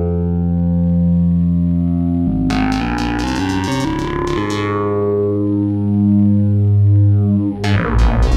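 Synton Fenix 2 analog modular synthesizer playing long held low notes through its phaser in feedback mode and its delay. The pitch shifts with a bright attack a little over two seconds in. Near the end a sharp new note enters with quickly repeating echoes.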